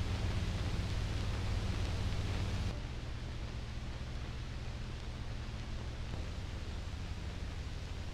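Steady hiss-like noise with a low hum underneath and no music or singing. It steps down in level about three seconds in and again about six seconds in.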